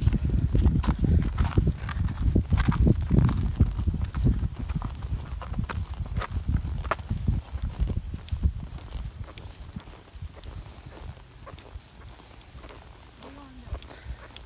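Two horses walking, their hooves clip-clopping on a gravel track, the steps growing softer and sparser as they move onto grass. A low wind rumble on the microphone in the first half fades after about eight seconds.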